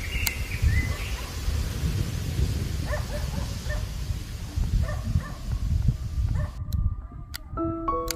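Wind buffeting the microphone outdoors as an uneven low rumble, with a few faint high chirps near the start. Near the end the outdoor sound cuts off and soft piano music begins.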